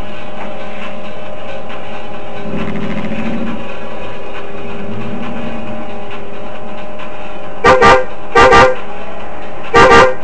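Car horn honked in three pairs of short toots near the end, over a steady background drone of traffic and engine noise.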